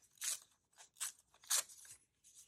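A small sheet of paper being torn by hand in a few short rips, pulling the letters of a written name apart.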